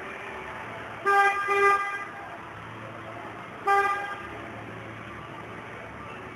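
A horn sounds twice over a steady background hum: first a double honk about a second long, then a single short honk near the middle.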